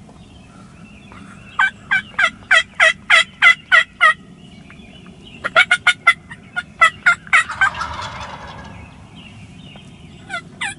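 Turkey yelps: a run of about nine loud notes, each falling steeply in pitch, about four a second. About a second later comes a quicker, more broken run, ending in a short rough scratchy noise.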